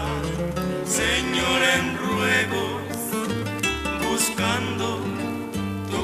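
Bolero music played on acoustic guitars: a plucked guitar melody over bass notes and chords, in an instrumental passage between sung lines.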